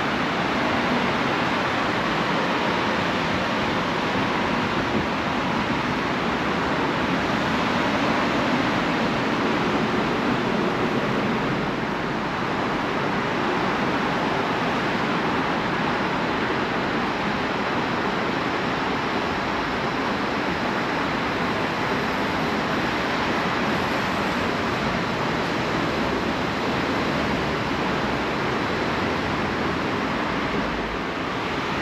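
Steady, even rushing background noise of an open-air metro platform, with no distinct events and no train passing.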